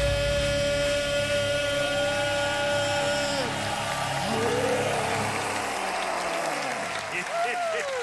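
Final sung note of a pop-rock song, held for about three and a half seconds over the band, then the music dies away. A studio audience applauds and cheers, with whooping voices rising near the end.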